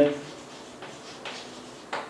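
Chalk writing on a blackboard: a few faint, short scratching strokes, with a sharper tap near the end.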